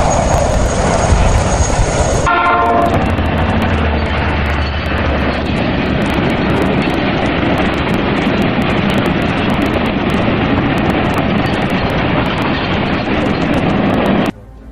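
For the first two seconds a tandem-rotor Chinook helicopter runs with a steady high whine. Then a freight train of loaded flatcars passes, with a brief horn-like tone as it begins, followed by a steady rumble and the clatter of wheels on the rails.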